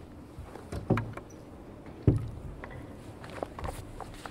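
Two dull thumps about a second apart, with scattered light knocks and clicks: people moving about at a table, handling papers and furniture.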